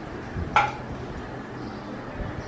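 A single short clink of tableware about half a second in, over faint room noise.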